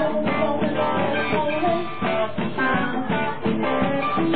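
Live rock band playing, an electric guitar to the fore, with no vocals.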